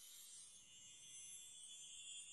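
Near silence, with only a faint high hiss.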